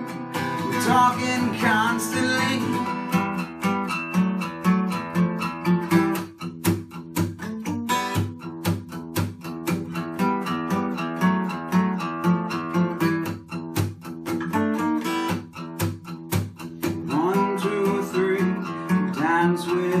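Takamine acoustic guitar playing an instrumental break in a quick, even picked rhythm. A sung note trails off over the first few seconds, and singing comes back in near the end.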